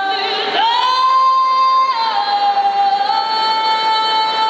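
A woman singing long held high notes into a microphone. About half a second in she slides up to a higher note and holds it, then drops a little to another note held long through the end.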